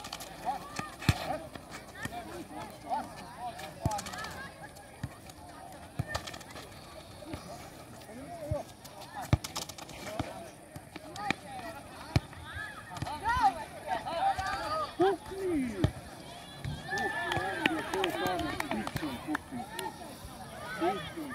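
Players and spectators shouting and calling out across an outdoor futsal court, the voices busiest in the second half, with a sharp knock of the ball being kicked every few seconds.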